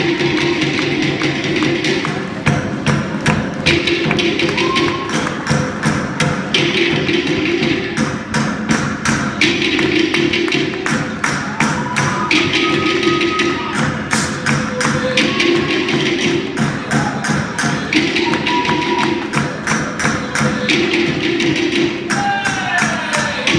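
Music carried by fast, steady drumming, a dense run of strikes with a pattern that repeats about once a second.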